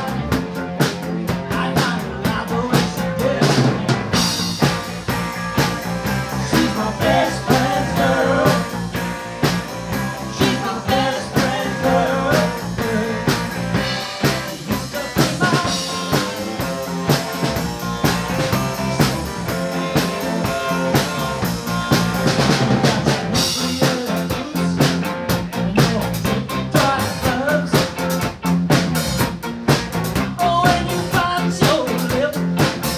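A live rock band playing, with a drum kit keeping a steady beat and cymbals swelling in a couple of passages.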